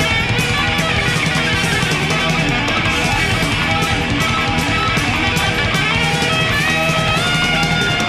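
Instrumental heavy metal: distorted electric guitars over bass and a steady, driving drum beat, with no vocals.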